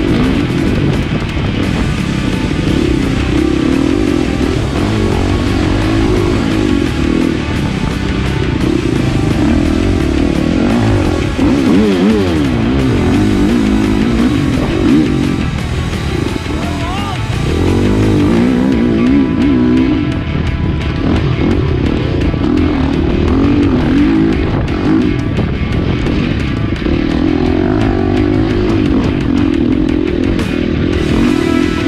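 Husqvarna dirt bike engine revving up and down as it rides along a trail, its pitch repeatedly rising and falling, with background music mixed in.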